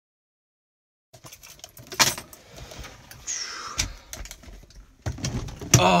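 Silence for about a second, then a run of clicks, knocks and rustles from handling inside a vehicle's cab, with sharp knocks about two seconds in and near the end.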